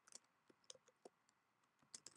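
Computer keyboard typing: a string of faint, irregular key clicks.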